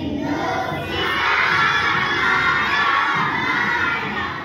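A large group of young schoolchildren shouting and cheering together, loud and sustained, swelling about a second in.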